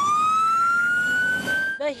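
Fire engine siren wailing, one slow rise in pitch that breaks off near the end.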